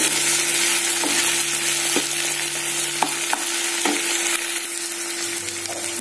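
Chopped onions, tomatoes and green chillies sizzling as they fry in oil in a non-stick pan, stirred with a spatula in strokes about once a second. A steady low hum runs underneath.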